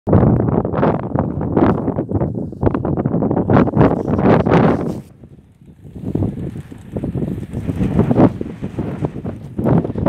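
Wind buffeting the phone's microphone in loud, irregular gusts, with a short lull about five seconds in.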